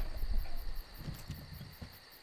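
Crickets chirping in a fast, even pulse over a steady high insect trill.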